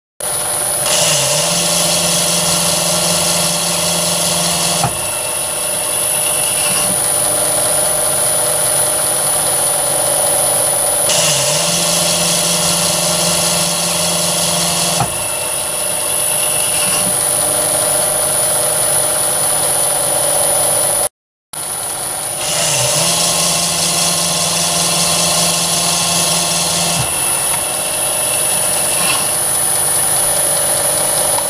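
Myford ML7 lathe running under power with a steady high whine. Three times, for about four seconds each, a lower hum with a harsher hiss joins in and then stops abruptly.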